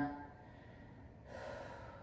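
A person's audible in-breath: a soft, airy hiss lasting under a second, coming after a short pause about two-thirds of the way through.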